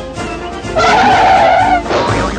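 Cartoon skid sound effect: a loud screech like tyres skidding, lasting about a second, over background music. It marks the carriers braking to a sudden halt just before they tumble.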